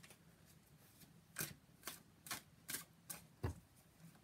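Tarot deck being shuffled by hand: a faint run of about six short, separate card slaps, roughly two a second, starting about a second and a half in.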